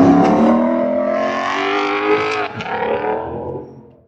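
A car engine accelerating as the car drives past, a steady pitched engine note that fades out near the end.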